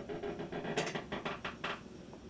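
Handling noise from a violin case's dust cover being lifted and moved: a quick run of light rustles and clicks about a second in.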